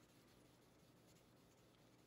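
Near silence with faint scratchy rubbing: 1500-grit sandpaper worked by hand over an electro-etched AEB-L stainless steel knife blade to clean up the etch.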